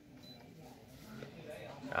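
Pioneer 3-disc multi CD player's tray mechanism running faintly as the disc tray opens after the open/close button is pressed, growing slightly louder in the second half.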